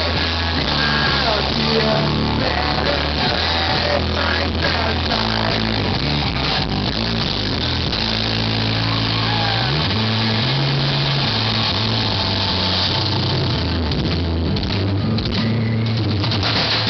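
Live rock band playing through a PA: electric guitars, bass and drums, with sustained bass notes that shift pitch and slide upward about ten seconds in.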